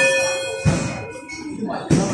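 Round bell struck once to start the round, ringing with several clear tones that fade over about two seconds. Two dull thumps come through, one about half a second in and one near the end.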